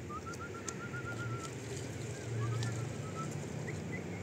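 A whistled, warbling trill: a quick run of short, even notes, then a second wavering phrase, and a higher note near the end, over a steady low hum.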